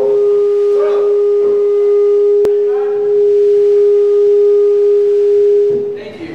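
A loud, steady, pure-sounding tone held at one pitch from the band's amplified stage gear, cutting off just before the end; a single sharp click about two and a half seconds in.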